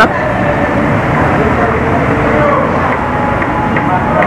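Steady street background noise with a low traffic rumble and faint voices.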